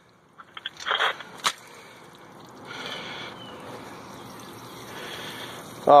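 Water escaping under pressure from a leaking coupling on buried 2-inch PVC pipe, welling up into the puddle in the trench. It is a steady watery noise that starts about three seconds in, after a few light clicks and a sharp tap. The leak is at the coupling.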